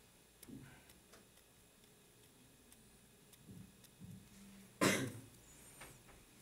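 A person coughing once, a short sharp burst about five seconds in, over faint scattered ticks.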